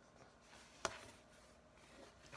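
Faint strokes of a black marker drawing on a small handheld whiteboard, with one sharp click a little under a second in.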